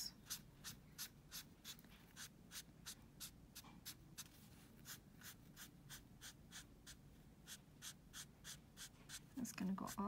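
Marker pen tip flicking across paper in short, quick strokes, faint scratches about three a second, as leaf strokes are drawn thick to thin.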